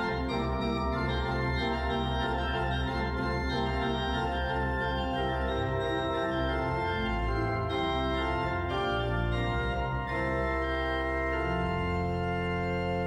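Pipe organ playing: moving chords on the manuals over sustained deep pedal notes, with the bass line shifting to a new note near the end.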